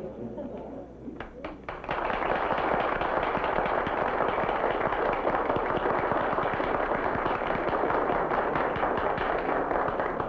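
Audience applauding: a few scattered claps at first, then from about two seconds in a full, steady round of applause.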